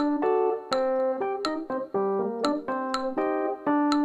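Electric stage keyboard playing with a piano sound: a rhythmic, syncopated pattern of repeated chords, each struck sharply, with no other instruments.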